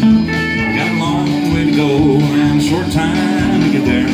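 Live pedal steel guitar playing a country song, holding notes and sliding between them.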